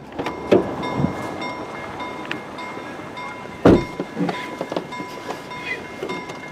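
Level-crossing warning bells ringing steadily at a half-barrier crossing, with a few low thumps over them, the loudest about halfway through.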